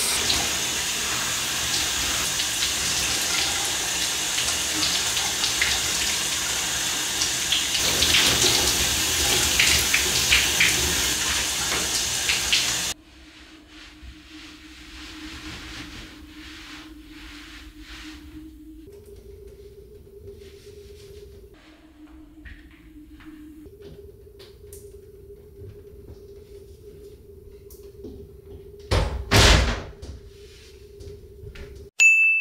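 Shower running, the spray hissing steadily onto the man and the stall, until the water is shut off and stops suddenly about 13 seconds in. After that it is much quieter: a low steady hum that shifts pitch a few times and scattered faint clicks, then a loud burst lasting about a second just before the end.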